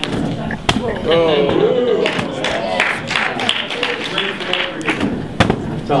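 An inflatable beach ball thrown overhand, with a few sharp thuds as it is hit, caught or lands: one near the start, one a moment later and one near the end. Untranscribed voices from the audience are heard in between.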